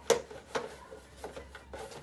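A hand rummaging through a box packed with raffle tickets, with a sharp knock just after the start, another about half a second in, and lighter clicks and rustling between.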